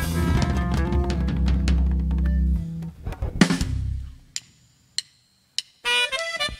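Live norteño band with accordion, saxophone, bass and drum kit playing, then stopping on a loud drum hit about three and a half seconds in that rings out. A near-silent pause follows, broken by three sharp clicks about half a second apart, and the band comes back in loudly just before the end.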